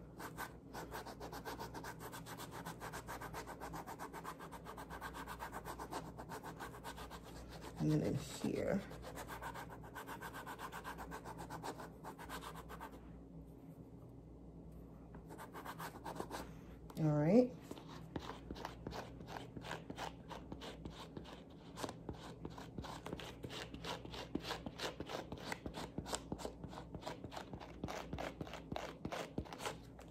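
A suede eraser block rubbed back and forth in quick short strokes over the suede of an Adidas Gazelle sneaker, scrubbing a stain out of the nap. The strokes ease off for a couple of seconds around the middle, then resume.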